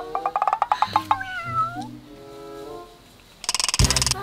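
Edited comedy sound effects over light background music. A fast run of ticks, like a sped-up clock, comes first. About a second in there is a short meow-like gliding cry, and near the end a bright swishing transition effect.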